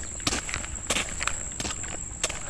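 Footsteps of a person in boots walking at a brisk pace on a concrete path, about three steps a second.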